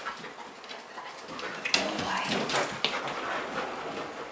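A bed bug detection dog making small whining noises as it searches at close range, with a sharp click about a second and three-quarters in.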